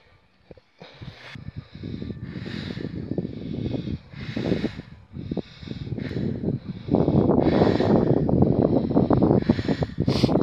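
A man blowing rescue breaths into a limp deer's muzzle: a rush of hissing air about six times, every second or two. Under it runs a low wind rumble on the microphone, louder from about seven seconds in.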